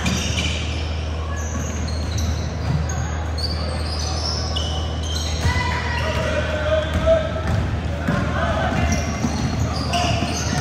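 Basketball game sounds on a hardwood gym floor: a ball bouncing and many short, high-pitched sneaker squeaks as players run, with voices calling out over a steady low hum in the hall.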